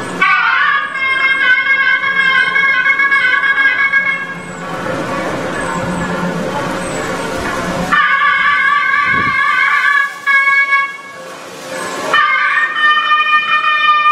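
Nadaswaram, a South Indian double-reed pipe, playing temple music in long held, wavering notes. The notes come in phrases of a few seconds, with short breaks between them: one near the middle and one shortly before the end.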